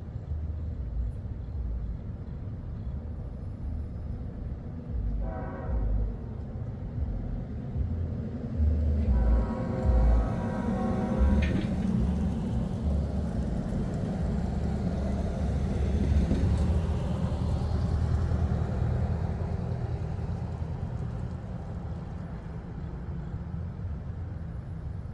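Diesel locomotive horn sounding for a grade crossing: a short blast about five seconds in and a longer one from about nine to eleven seconds. Under it runs the low rumble of the train, which swells in the middle and eases off toward the end.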